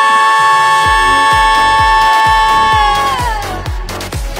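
Two women singers holding one long high note together, steady in pitch, then sliding down and letting go near the end. Under it a dance remix backing track's kick drum comes in about a second in, a little over two beats a second.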